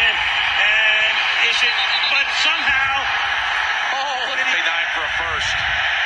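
Audio of a televised NFL highlight played through a phone's small speaker: a broadcast commentator talking over a steady roar of stadium crowd noise.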